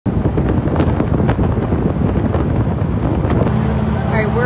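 Wind buffeting the microphone over the rushing water and engine of a Coast Guard boat under way. About 3.5 seconds in it switches to a steadier engine drone heard from inside the cabin.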